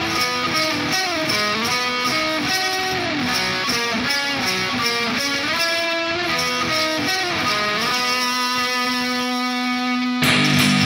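Instrumental rock music: an electric guitar plays a gliding, bending melody over a steady beat, then settles on one long held note near the end.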